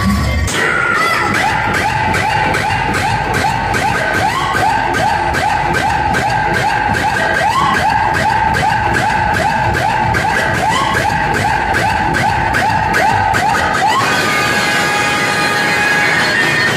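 Loud DJ music playing from truck-mounted DJ sound systems: a short high melody figure repeats quickly over a steady fast beat. About fourteen seconds in, the beat drops out and the music changes.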